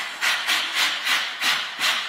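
A women's choir making short, sharp breathy exhalations together in a steady rhythm, about three a second, with no sung pitch.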